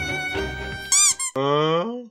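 Background music with a violin, broken about a second in by cartoon-style sound effects: a quick run of high squeaky chirps, then a loud tone that slides upward.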